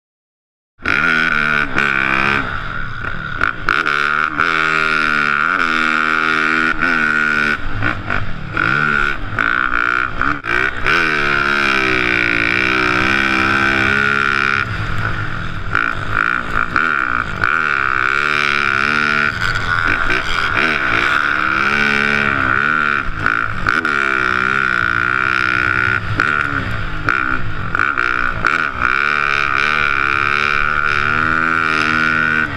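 Snow bike's dirt-bike engine heard from the rider's helmet, revving up and falling back again and again as it is ridden hard through the gears, with a steady high whine alongside. It starts suddenly just under a second in.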